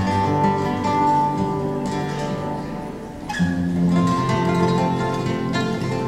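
Two classical nylon-string guitars playing together, with plucked notes and chords ringing on. A strong chord is struck at the very start and another about three seconds in.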